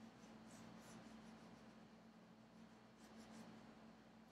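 Faint scratching of a soft graphite pencil on smooth drawing paper, a few light shading strokes, over a low steady hum.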